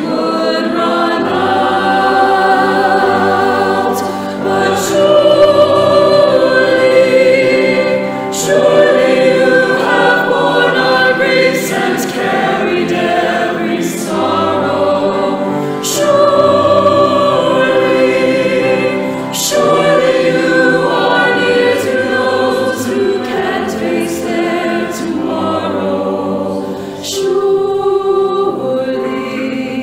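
Mixed church choir singing a slow anthem in harmony, with long held notes.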